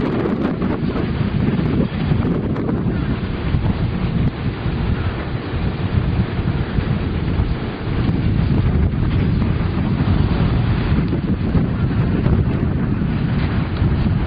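Wind buffeting a camera microphone: a loud, uneven low rumble, with brief dips about two and eight seconds in.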